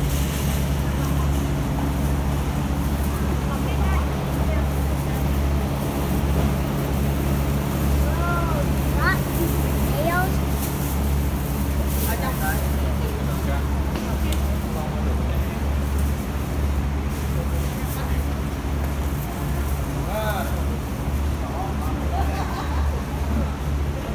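A steady low mechanical hum, with faint scattered voices of people nearby and a few brief clatters.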